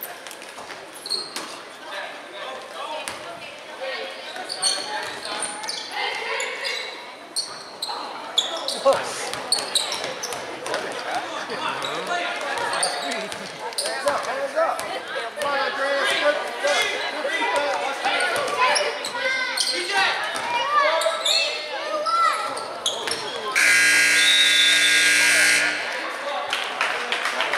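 Basketball bouncing on a hardwood gym floor amid the chatter and shouts of spectators in a large echoing gym. Near the end the scoreboard horn sounds one steady loud blast of about two seconds.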